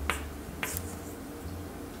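Two quick, crisp snaps about half a second apart as a stiff tarot card is drawn from the deck and flipped over by hand, over a faint low steady hum.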